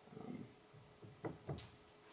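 A man's quiet, drawn-out hesitation "um", then a few faint short ticks and a brief breath in before he speaks again; otherwise near-quiet room tone.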